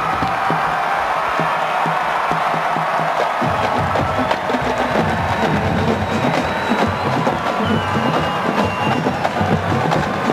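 College marching band drumline playing a cadence on snare drums, with bass drums joining in about three and a half seconds in, over stadium crowd noise.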